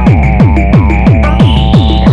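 Fast free-party tekno: a pitched-down kick drum hitting about three times a second over a steady deep bass. A high synth tone starts to rise near the end.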